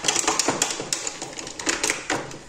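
Makeup brushes and small cosmetic cases clicking and clattering against each other as they are rummaged through, a quick irregular run of light clicks.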